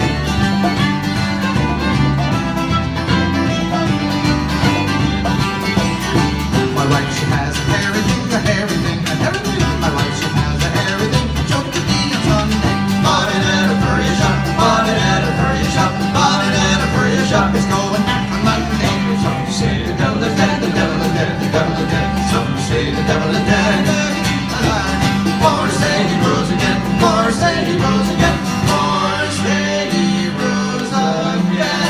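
Live Celtic bluegrass fusion band playing an instrumental passage: fiddle over strummed acoustic guitar, a bass line and congas, with a steady driving beat.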